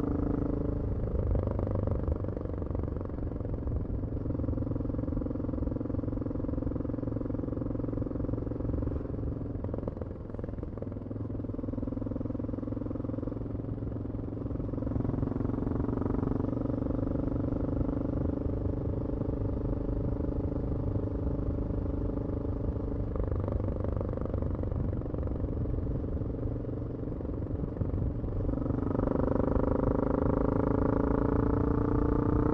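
2002 BMW F650GS single-cylinder engine through a Scorpion Oval slip-on exhaust with its dB-killer fitted, running under way on the road. The engine note holds steady for several seconds at a time, shifts pitch a few times, and rises in pitch and level near the end.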